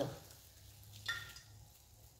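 Faint hiss of hot oil frying in a pan on a gas burner, with a steady low hum underneath.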